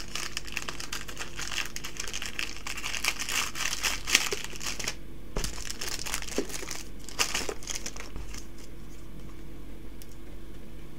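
A clear plastic card sleeve crinkling and crackling as trading cards are handled and slid into it. The crackling is dense for most of the time, pauses briefly about halfway, and dies away near the end.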